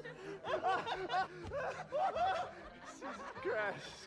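A person laughing in a run of short giggles and chuckles that rise and fall in pitch.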